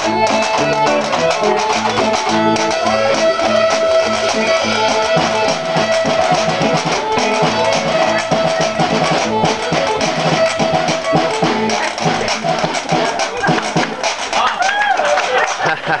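Small live band playing: drum kit, electric guitar, fiddle and washboard together in a continuous tune. The playing thins out near the end, where laughter comes in.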